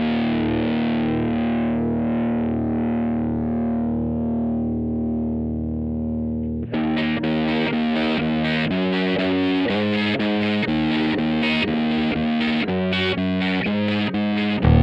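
Intro music on distorted electric guitar. A held chord rings and slowly fades for about six and a half seconds, then a busy run of quick picked notes begins.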